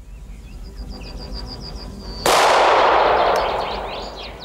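An SM-70 automatic firing device (directional anti-personnel mine) on the East German border fence going off: one sudden loud blast about two seconds in that dies away over the next second and a half.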